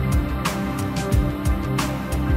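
Instrumental background music with a steady beat.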